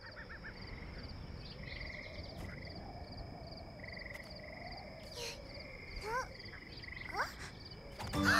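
Evening nature ambience of frogs trilling, two pulsing calls at different pitches over a low, steady rumble. A few short rising chirps come in near the end.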